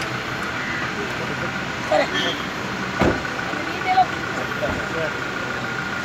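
A car idles with a steady hum and a thin steady tone. A single thump about halfway through fits its door being shut. Short snatches of voices come through around it.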